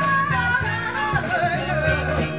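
Live band playing on stage, with drums and bass keeping a beat under horns and voices. A long held note ends about a quarter second in, and a moving melody line follows.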